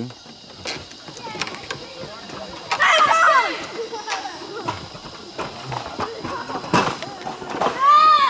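High-pitched voices call out about three seconds in and again near the end, over scattered knocks and clicks of footsteps on the wooden planks of a rope suspension walkway.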